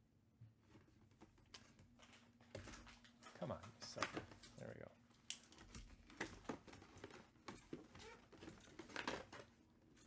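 Faint cardboard handling: a box turned and its flaps pried open, with scattered rustles, scrapes and clicks.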